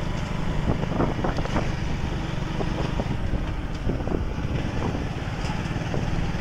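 Steady low rumble of a moving vehicle's engine and tyres on the road, with a few faint knocks as it rolls over the bridge's joints and patched surface.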